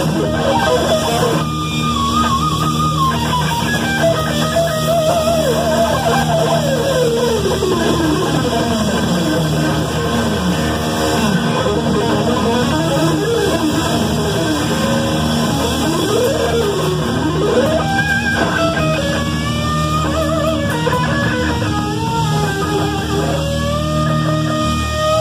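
Live neo-classical heavy metal instrumental: a lead electric guitar plays fast scale runs sweeping down and up over the band's steady backing.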